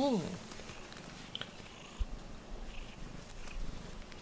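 Domestic cat purring steadily while being stroked, close to the microphone, with a soft thump about two seconds in.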